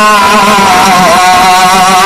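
A man's voice held in a long, wavering, unbroken tone, loud, with no pauses between words.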